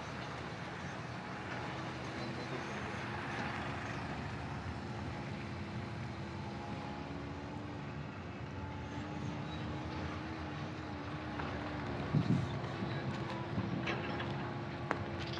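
A vehicle engine running steadily, a faint hum that wavers slightly in pitch over a constant rushing noise, with a brief low thumping near the end.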